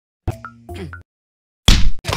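Two short cartoon sound effects, plop-like, each carrying a brief high tone, about half a second apart. After a pause, a loud hit sound effect comes near the end as a character is kicked over.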